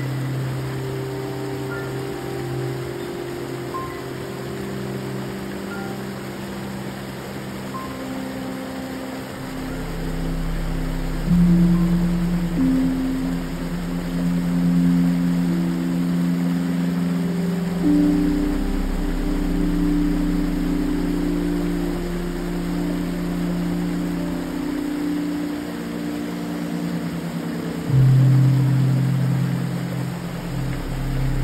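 Slow ambient synthesizer music of long held low notes that shift every few seconds, over the steady rush of a small creek waterfall spilling over a rock ledge. A deeper note swells in near the end.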